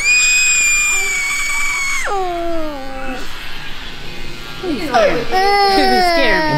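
A one-and-a-half-year-old boy screaming and crying, upset at having his hairline edged up. It begins with one high-pitched scream held about two seconds that breaks and falls into a wail, then after a short lull a second crying wail starts about five seconds in.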